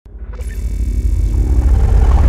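A deep, low rumble swelling up from silence, with faint steady tones above it: the build-up of an animated intro's sound effect.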